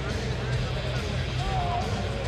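Arena background after the fight: faint, indistinct voices and crowd murmur over music playing in the hall, with a steady low hum.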